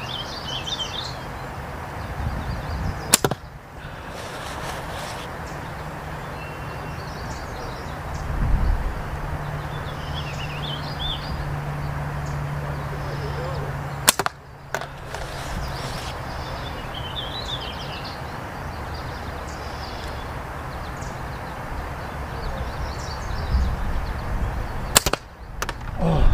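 Titan Hunter aluminium slingshot fired three times, about eleven seconds apart. Each shot is a single sharp crack as the bands snap forward on release.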